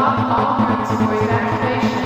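Anthemic electronic trance music playing at full volume: a dense synth mix with a fast repeating pulse over a steady bass.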